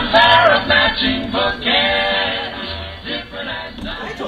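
Male voices singing a song, loud at first and trailing off toward the end.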